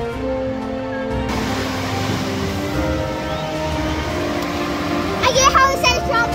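Background music with long held notes. A little over a second in, a steady rush of wind and surf joins it, and near the end a child speaks briefly.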